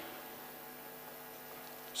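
Faint steady electrical hum of several even tones, the background of a microphone and sound-system line during a pause in speech.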